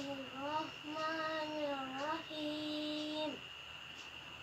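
A boy chanting Quran recitation in Arabic, melodically, in phrases that rise and fall. The last phrase is a long held note that stops a little after three seconds in.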